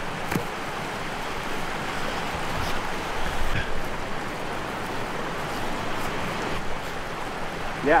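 Steady rush of a mountain stream running close by, with a few short sharp clicks over it.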